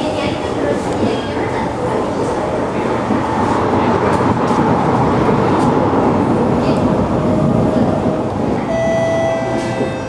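SMRT C751B metro train running, heard from inside the carriage: a continuous rumble of wheels on rail, slightly louder midway. A steady whine comes in near the end.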